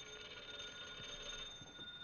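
A telephone bell ringing: one steady ring of several high, fixed tones that starts suddenly and stops just before the end.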